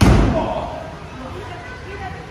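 A wrestler's body slammed onto the canvas of a wrestling ring: one loud boom of the ring deck at the very start, dying away over about half a second.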